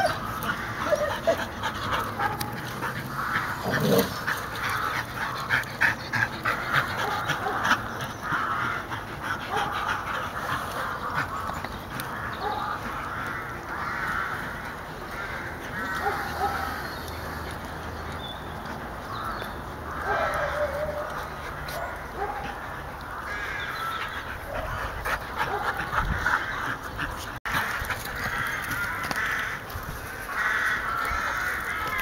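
Belgian Shepherd dogs (a Groenendael and a Tervueren) making dog sounds as they play, in short irregular bursts.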